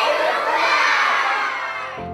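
A crowd of children cheering and shouting together, many voices at once, loudest early on and dying away toward the end.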